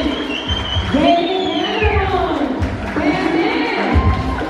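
Song with a sung melody over a bass beat, played loud through a PA system in a large hall.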